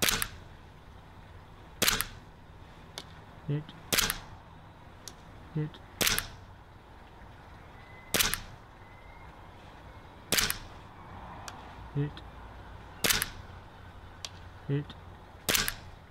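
WE G17 gas blowback airsoft pistol firing single shots about every two seconds, each a sharp crack from the gas release and slide cycling, eight in all; fainter ticks fall between the shots.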